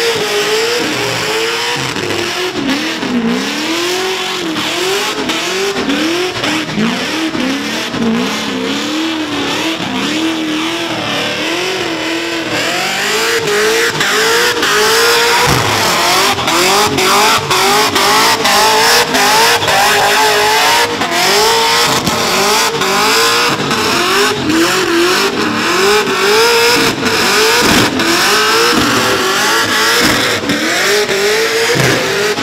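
Supercharged, built 5.7-litre LS1 V8 in a burnout truck, held high in the revs and revved up and down over and over, about once a second, with the rear tyres spinning in the burnout. Loud and continuous, with frequent brief cuts in the engine note.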